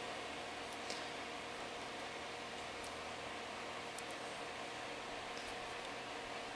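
A shop heater running: an even, steady hiss with a faint hum. A few faint clicks come from the fan's electrical plug as its bent prongs are handled and straightened.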